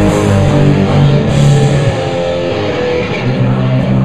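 A live rock band playing loud, with distorted electric guitars over bass and drums; cymbal wash fills the top in the first half and thins out about halfway through.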